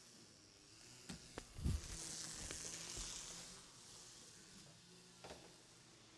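Faint movement noise picked up by a clip-on microphone: a few light knocks and a soft thud, then a soft rustling hiss, like clothing brushing the mic, for about a second and a half.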